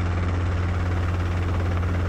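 Robinson R22 helicopter in a low hover, heard from inside the cabin: a steady low drone from its engine and rotor that holds even throughout.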